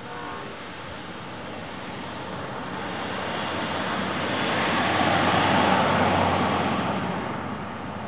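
Amtrak Coast Starlight passenger train, the last of its horn fading in the first half second, then its rumble growing louder as it nears, loudest about five or six seconds in and easing off near the end.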